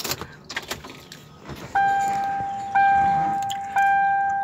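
Ignition key turned in a Ford sedan with a few clicks and rattles, then the dashboard warning chime sounding three times, about once a second, each ding fading away.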